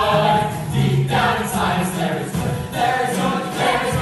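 A group of male voices singing a show tune together.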